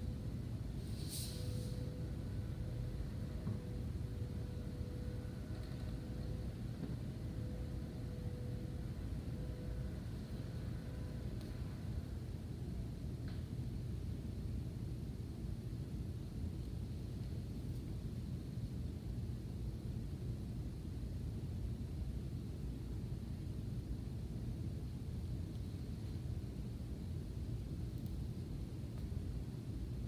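Steady low rumble of background room noise, with a faint steady hum for about the first ten seconds and one short, high hiss about a second in.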